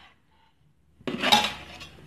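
After about a second of silence, a brief clatter of a kitchen utensil against a wooden board, sharp at first and then fading.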